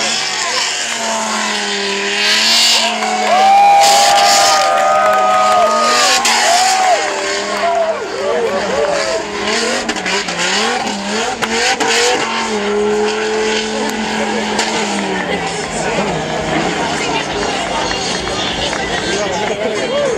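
Dodge Viper drift car's V10 doing donuts: the engine is held high and revving while the rear tyres squeal and smoke, its pitch wavering up and down as the car spins. The engine and tyres are loudest a few seconds in, with voices mixed in throughout.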